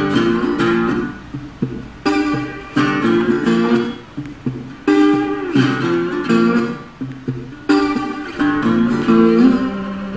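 Acoustic guitar playing an instrumental intro: chords strummed and left to ring and fade, struck afresh every two to three seconds, with single picked notes between and a couple of notes bending in pitch.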